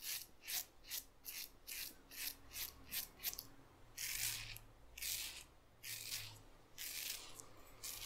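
Double-edge safety razor (Romer 7 S1 hybrid head with a sharp Bic Chrome Platinum blade) scraping through two-day stubble under shaving cream. It starts with a quick run of short scratchy strokes, about three a second, then changes to slower, longer strokes from about four seconds in.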